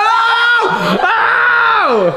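Excited high-pitched shrieking from young voices: two long held screams, the second gliding down at the end.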